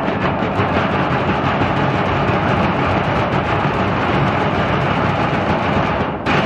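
A percussion band beating oil drums with wooden sticks in a fast, dense, steady rhythm.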